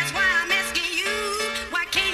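Speed garage / bassline house track playing in a DJ mix: a steady beat and a held bass line under a wavering melodic line.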